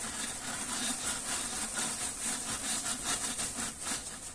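A steady, rapid rubbing or scrubbing noise made of many quick strokes, several a second.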